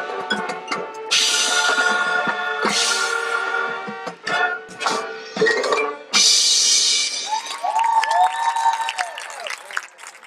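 High school marching band playing its field show: sustained brass chords over drums and front-ensemble mallet percussion, with loud accented hits about a second in and again about six seconds in. Near the end the music thins out to a few held tones that bend in pitch.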